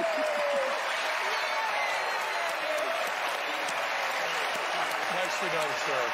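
Studio audience applauding steadily, with voices calling out over the clapping.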